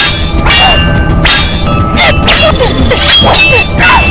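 Metal blades clashing, as in a cutlass fight: a quick series of loud clangs, each ringing on briefly.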